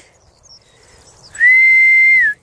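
A person whistling one steady, high note, held for about a second, starting about one and a half seconds in: a recall whistle calling dogs.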